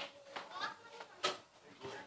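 Three short clicks from metal serving tongs picking fried snacks onto a plate, the last and loudest a little past halfway, with faint voices between them.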